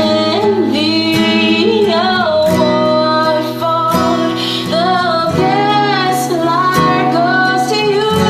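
A woman singing a slow ballad over an acoustic guitar accompaniment.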